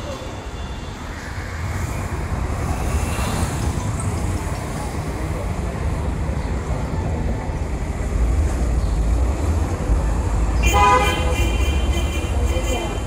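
Street traffic rumbling steadily, with a vehicle horn sounding near the end and held for over a second.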